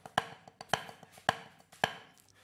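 Wooden drumsticks on a rubber practice pad playing paradiddles. Four loud accented strokes fall about half a second apart, with softer taps between them: the accent is on the first note of each paradiddle.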